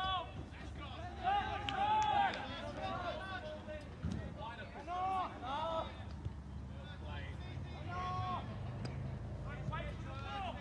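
Voices shouting calls across a soccer pitch during play: a burst of shouts just after the start, more around five seconds in and again around eight seconds in.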